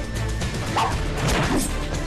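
Fight sound effects over a dramatic music score: several sharp hits and swishes as two fighters grapple over a blade.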